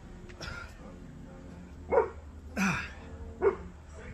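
A dog barking three times in the second half, short barks a little under a second apart.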